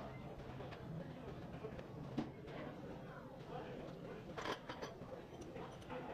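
A few sharp metallic clicks and knocks from suspension parts being handled, one strong one about two seconds in and a cluster of them about four and a half seconds in, over a steady workshop background noise.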